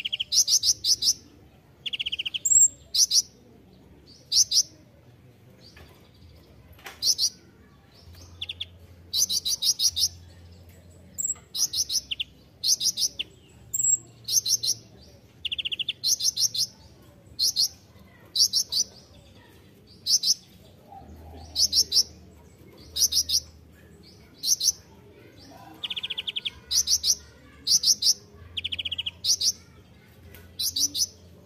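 Copper-throated sunbird (kolibri ninja) singing: short, high, rapid trilled phrases repeated about once a second, with now and then a lower trill between them.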